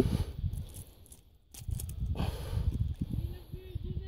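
Irregular low rumble and rustling noise with a brief lull about a second and a half in, and a faint steady hum near the end.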